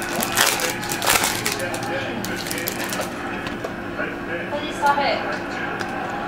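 Trading card pack wrapper crinkling and tearing as it is opened by hand, with rustling of the cards. It is busiest in the first three seconds and quieter after.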